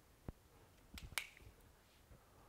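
Faint, sharp clicks of a whiteboard marker being handled and capped: a single click about a third of a second in, then a quick cluster of clicks about a second in. Otherwise near silence.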